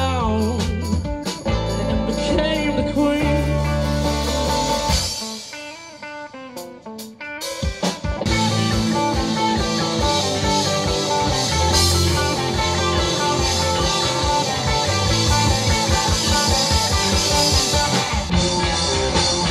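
Live rock band playing electric guitars, bass guitar and drum kit. About five seconds in the music drops to a sparse, quieter break, and the full band comes back in around eight seconds.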